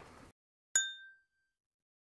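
A single bright ding sound effect, a bell-like chime that strikes once about three-quarters of a second in and rings out briefly over otherwise dead silence.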